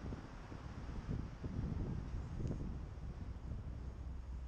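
Airflow buffeting the camera microphone of a paraglider in flight: a gusty, uneven low rumble of wind noise.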